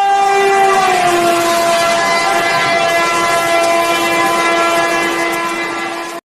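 A train horn sounding one long blast over rumbling noise, its pitch dropping slightly about a second in and then holding steady.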